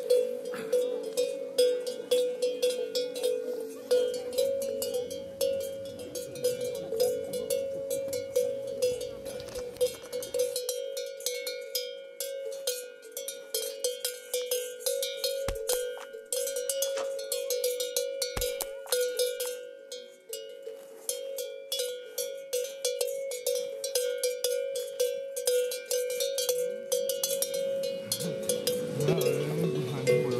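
A bell hung from a grazing cow's neck clanking over and over in an irregular rhythm as the cow moves, each strike ringing on the same pitch.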